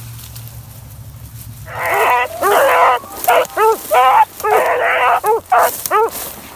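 Beagle hounds giving voice on a hunting run: from about two seconds in, a string of loud baying calls, some drawn-out bawls mixed with short chopped barks.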